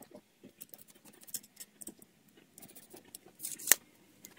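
Pencil scratching marks onto a white aerated concrete block, with light scrapes and handling of the tape measure, and a sharp click a little before the end.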